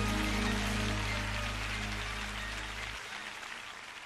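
The last held chord of a live gospel band, its low notes sustained and then stopping about three seconds in, with audience applause over it, the whole sound fading out.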